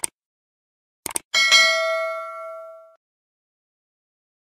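Subscribe-button animation sound effects: a sharp click, a quick double click about a second later, then a bright notification-bell ding that rings out and fades over about a second and a half.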